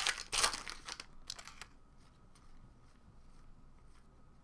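Foil wrapper of a basketball trading-card pack being torn open and crinkled by hand: a dense crackling over the first second and a half, then only faint handling sounds.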